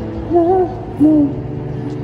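Live street performance of a male singer with an acoustic guitar: two short sung notes, each bending a little in pitch, over sustained guitar chords.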